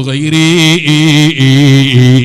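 A man's voice chanting melodically in long held notes, with short breaks between phrases.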